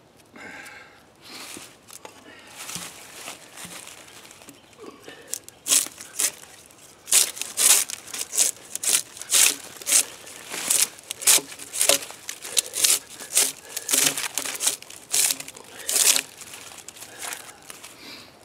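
Draw knife stripping bark from a pine log in repeated pull strokes, each a short scrape with the bark tearing away. The strokes start about six seconds in and go on at roughly one to two a second.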